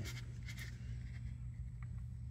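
Faint rubbing and scraping of a plastic pool-light housing being handled in a PVC adapter fitting, with a small tick near the end, over a steady low hum.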